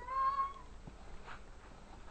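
A young girl's short, high-pitched, mew-like whimper, about half a second long and rising slightly at the start.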